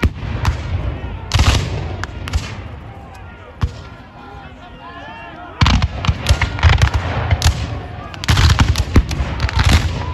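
Black-powder muskets fired by a line of reenactors: ragged volleys and scattered shots, a burst about a second and a half in and a dense, rolling run of fire from about five and a half seconds on. Crowd chatter underneath.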